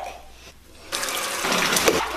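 Bathtub tap turned on and running, water pouring into the tub. The steady rush starts suddenly about a second in.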